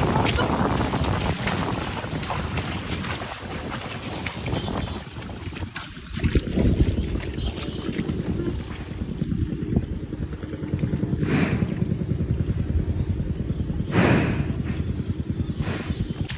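Wind rumbling on the microphone over the slosh of water and mud as water buffalo wade through a flooded rice paddy. Two brief louder rushes come in the second half.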